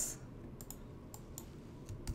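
A few faint, scattered clicks from a computer keyboard, with steadier typing starting right at the end.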